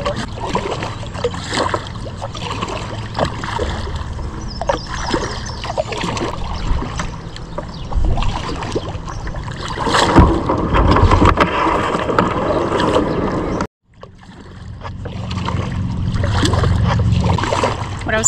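Kayak paddle strokes on a river, water splashing and dripping off the paddle blades over a steady low rumble of wind on the microphone. A brief dropout about three-quarters through.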